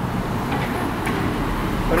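City street traffic: cars driving by with a steady low rumble.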